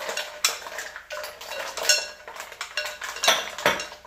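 Wooden spoon stirring mussels and shrimp in a clear glass Visions pot: irregular clicks and clatters of the hard mussel shells and spoon knocking against the glass.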